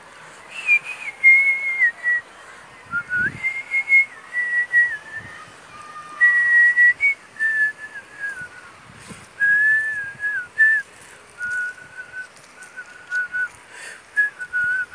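A person whistling a slow tune of held notes joined by small slides, the melody gradually stepping lower in pitch.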